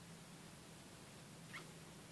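Near silence: faint room tone with a steady low hum, and one brief high squeak about one and a half seconds in.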